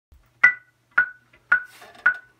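Metronome count-in from recording software, played over studio monitors: three evenly spaced clicks about half a second apart, the first higher-pitched as the accented downbeat.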